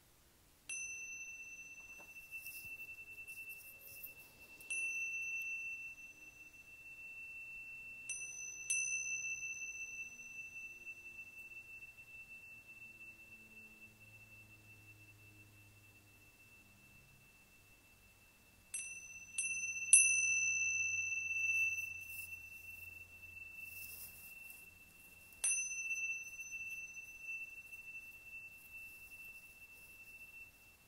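Tingsha cymbals struck together about eight times, sometimes in quick pairs or threes, each strike leaving one long, clear, high ring that fades slowly until the next.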